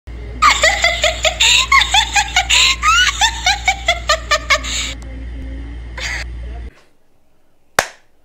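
Rapid, high-pitched laughter, several bursts a second for about four and a half seconds, over a steady low hum. The hum cuts off suddenly after about six and a half seconds, and a single sharp click follows near the end.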